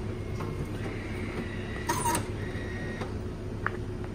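Automatic bean-to-cup coffee machine finishing dispensing a cappuccino: a steady mechanical hum with a thin whine, a brief louder burst about halfway through and a click near the end as the cycle completes.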